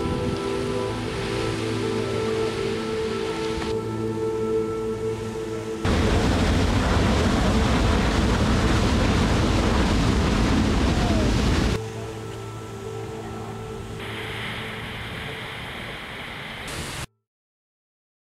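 Slow ambient music drone, with a loud, steady rushing-water noise from an erupting geyser cutting in partway through for about six seconds and stopping abruptly. The music carries on more quietly and cuts off suddenly near the end.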